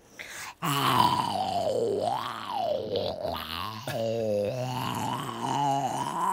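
A person's long, drawn-out groan, starting about half a second in after a brief silence and held at a steady low pitch with a slowly wavering vowel for about five seconds.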